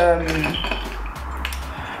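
A brief hesitant 'euh', then light clinking and rustling as small makeup items, a contour product and a brush, are handled, over a steady low hum.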